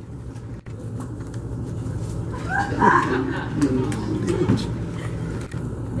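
Indistinct voices of people talking in a room, loudest around the middle, over a steady low hum.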